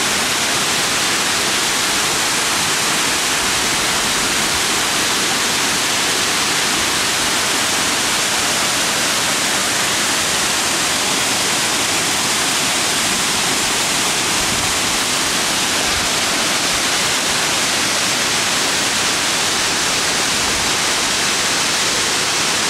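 Waterfall running: a steady, unbroken rush of falling water.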